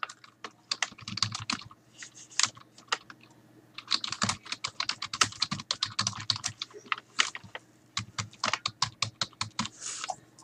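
Typing on a computer keyboard: rapid key clicks in uneven runs, with a few short pauses and the densest run in the middle.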